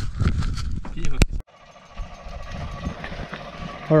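Clatter and clicks of a tie-down strap being worked on a car trailer, with one sharp click about a second in. The sound cuts off suddenly at about a second and a half, and a faint steady hum follows.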